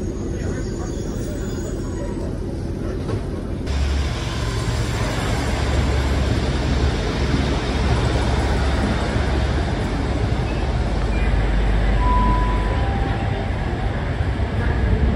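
Steady low rumble inside a standing train's cabin. About four seconds in it gives way to the louder running of diesel multiple units at a platform, with engines humming as one unit passes and a GWR Class 150 Sprinter pulls in. Two short high notes sound one after the other near the end.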